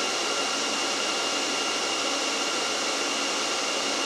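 Dell PowerEdge R740 rack server's cooling fans running at a steady speed: an even rush of air with a thin, steady high whine on top.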